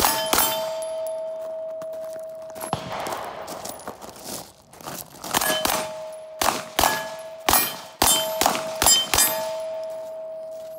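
Beretta 92-series 9mm pistol firing about a dozen shots at steel plates, each hit answered by a long ringing ping. Two quick shots open, a lone shot follows a few seconds later, then a rapid string of about nine shots fills the second half.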